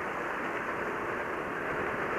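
Steady rush of wind and road noise from a Yamaha Mio i 125 scooter riding along at cruising speed. Its single-cylinder engine is running underneath. The sound is heard through a handlebar camera's improvised external microphone.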